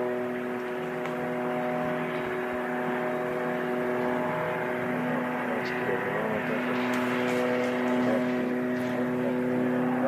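A steady mechanical drone holding several fixed pitches, over a background murmur with faint distant voices.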